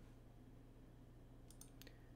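Near silence over a faint low hum, with a few faint computer mouse clicks close together near the end as a tab in a web page is selected.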